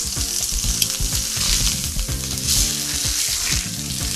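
Pork leg sizzling in olive oil in a hot frying pan, a steady sizzle that swells around the middle, as the meat is worked with a utensil in the pan. The meat is pressed down so it gives up its juices and cooks dry.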